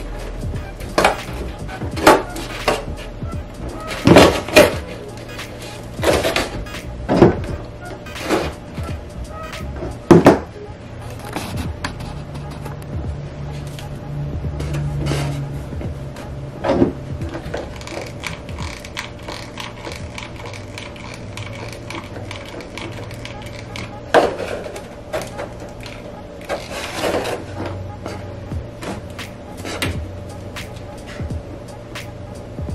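Latex balloons rubbing, squeaking and knocking against a foam-board frame as they are pressed and glued into place. There are about a dozen sharp, loud handling sounds, most in the first ten seconds, over steady background music.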